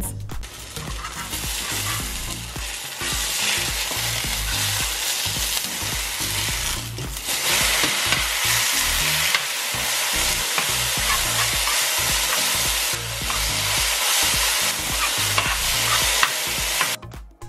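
Vegan egg mixture sizzling in hot oil in a non-stick frying pan while a slotted spatula scrapes and pushes it about, breaking the failed omelette up into a scramble. The sizzle is steady and dense and grows a little louder about halfway through.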